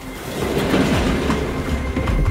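An industrial metal goods lift rumbling and clattering as it arrives and its doors open, swelling in loudness about half a second in.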